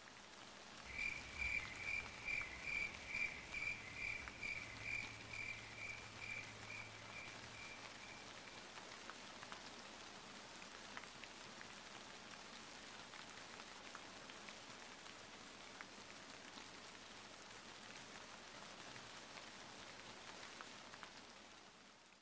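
Faint steady rain with scattered drips. For the first eight seconds a high chirping call repeats about twice a second, fading away.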